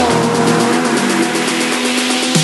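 Acura NSX GT3 race car's twin-turbo V6 driving past and away, its engine note dropping in pitch at the start and then holding steady, with electronic music underneath.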